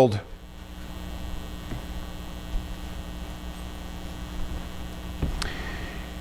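Steady electrical mains hum with a low rumble during a pause in speech, with one faint click about five seconds in.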